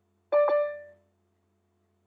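A single electronic notification chime, one bright tone that strikes about a third of a second in and fades away within about a second: a video-call alert of the kind Zoom sounds when someone joins the waiting room.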